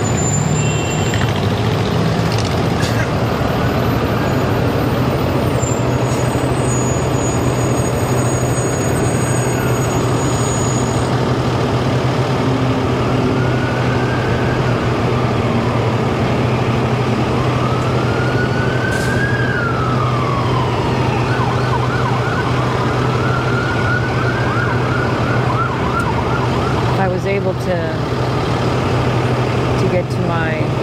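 Emergency-vehicle siren wailing, rising and falling in pitch, then sweeping up and down faster for a few seconds, heard over a steady engine hum and road traffic.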